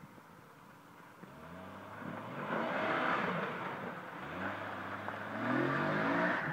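Jeep Cherokee XJ engine revving under load as it climbs out of a rutted dirt pit, rising in pitch twice, first from about a second in and again about four seconds in. It gets louder near the end as the Jeep drives close past.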